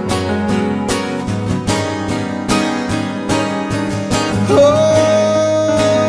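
Acoustic guitar strummed in steady chords. About four and a half seconds in, a long held high note joins over the strumming.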